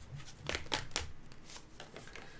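A tarot deck being shuffled and handled by hand: soft card clicks at uneven intervals as the cards slide against each other.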